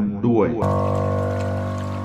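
A man's voice finishes a spoken sentence, then about half a second in, soft new-age background music begins abruptly as a sustained chord that holds steady, with a light trickling-water sound mixed in.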